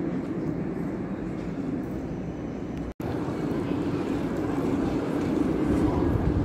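Steady street traffic noise, broken by a short dropout about halfway through; then a red electric city tram approaches on street rails, its running noise slowly growing louder.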